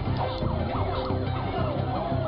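Emergency vehicle siren in a fast yelp, its pitch sweeping up and down about three times a second, over a steady low drone.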